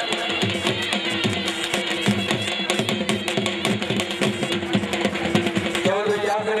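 Music with a fast, even drum beat and a long held note running through it.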